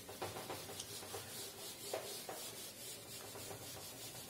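Whiteboard eraser wiping across a whiteboard in repeated short strokes, a faint dry rubbing.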